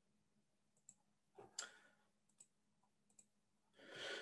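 Near silence with a few faint, sharp clicks, the loudest about one and a half seconds in, over a faint steady low hum.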